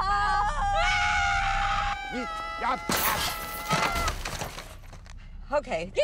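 Two women screaming together in long, held screams, with a crash and breaking noise about three seconds in as the car hits a newsstand.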